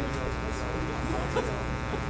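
A steady electrical buzz that runs under the whole recording, with indistinct murmur of people talking in the room.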